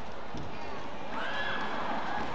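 Badminton players' shoes squeaking on the court floor during a fast rally. The clearest squeal comes about a second in, over the steady murmur of the hall.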